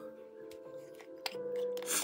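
Small plastic paint pot handled and its screw cap twisted off: a few sharp plastic clicks, then a brief scraping rustle near the end, over soft background music with held notes.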